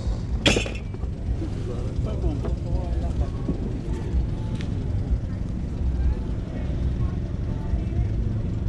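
Faint voices of people talking over a steady low rumble, with one sharp knock about half a second in.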